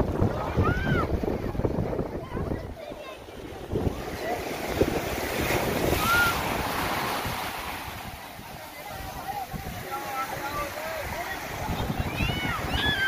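Sea surf breaking and washing over shallow sand, with wind buffeting the microphone in a low rumble. A few short, high children's shouts break through now and then.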